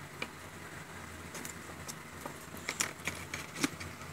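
Light clicks and taps of a plastic loose-powder jar being handled and turned in the fingers, scattered and more frequent in the second half, over a faint steady hum.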